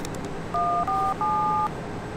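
Touch-tone telephone keypad beeps: three dialing tones in quick succession, the third held longer, each a two-note chord.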